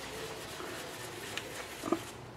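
Cloth rubbing over the dirty casing of a Lister D stationary engine as it is wiped clean, a steady soft scrubbing, with a small knock about halfway through and a brief low grunt-like sound near the end.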